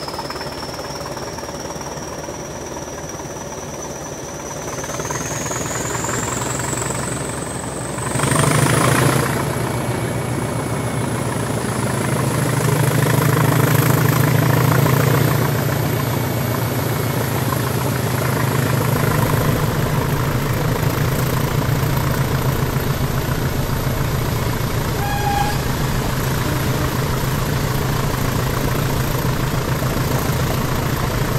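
English Electric Class 20 diesel locomotive's turbocharged engine, heard close from the cab side window as the train moves off under power. A high turbocharger whine climbs steadily for the first eight seconds or so. Then the engine noise jumps suddenly into a heavy low rumble that stays loud.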